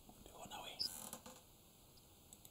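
A brief, faint murmur of a voice, close to a whisper, from about half a second in to about a second and a half, with a couple of small clicks. It is barely above silence.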